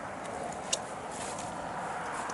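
Faint, steady outdoor background noise with a single light click a little before the middle.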